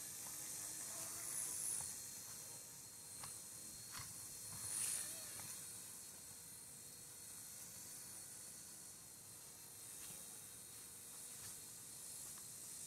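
Small radio-controlled Bell 206 model helicopter flying low, heard as a faint, steady high-pitched hiss and whine from its rotor and motor, swelling briefly twice.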